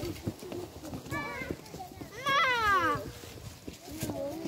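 Young children's high-pitched calls: a short one about a second in and a longer, falling one about two seconds in, over footsteps crunching on dry leaves and twigs.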